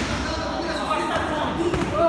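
Voices calling out in a large gym hall, over the dull thuds of boxing gloves and feet on the ring canvas, with a couple of sharper punch impacts near the end as the boxers exchange blows.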